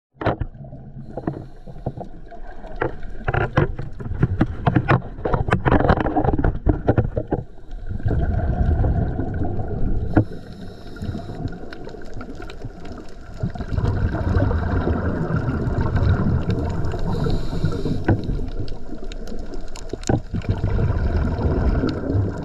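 Muffled underwater noise heard through a submerged camera: a run of sharp crackling clicks over roughly the first seven seconds, then a steady low rumble of moving water.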